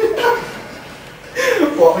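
A young man chuckling briefly, then a man beginning to speak near the end.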